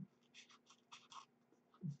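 Scissors snipping through orange construction paper: a quick run of short, faint snips from about a third of a second to just over a second in.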